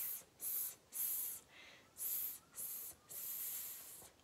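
A woman voicing the hissing "sss" sound of the letter S, six short hisses with brief pauses between them, the last one held longer.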